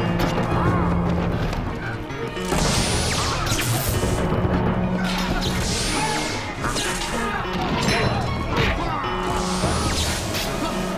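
Film soundtrack of a fight: dramatic music with a low held note, under repeated loud sound-effect hits every second or two, some carrying a rising whoosh.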